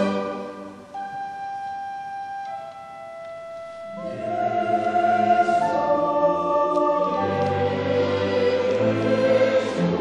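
Choir and chamber orchestra performing classical choral music. A loud passage gives way to a quiet stretch of a few long held notes, and the full ensemble swells back in about four seconds in, with the low parts filling out a few seconds later.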